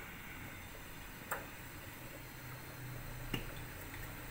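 Faint steady hiss of a lit gas stove burner heating an empty wok, with two light clicks.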